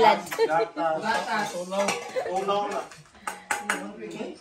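Women talking, with several quick, sharp clinks of kitchen tableware about three seconds in.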